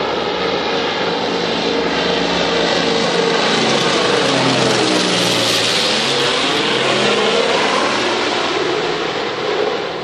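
Twin-propeller amphibious water bomber flying low overhead: its engine and propeller drone swells, peaks about halfway through, and drops in pitch as the plane passes, then fades a little.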